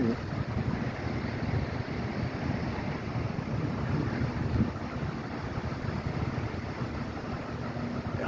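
Steady, low outdoor city background noise: the rumble of distant traffic, with a faint hum.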